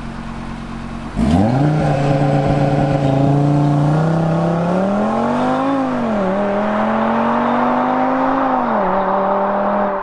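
Audi RS Q3's turbocharged five-cylinder engine and exhaust launching hard from standstill. The note jumps up about a second in as the car takes off, then climbs through the revs and drops back twice at the upshifts as it pulls away.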